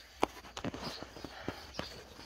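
Several short, irregularly spaced scuffs and knocks.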